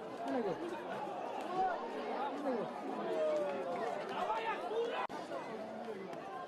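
Many overlapping voices calling and shouting at a football match, with pitches rising and falling over one another. The sound drops out for an instant about five seconds in.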